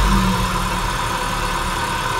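Car engine idling just after starting, its revs easing down from the start-up flare in the first moment and then running steadily, with a steady high whine over it.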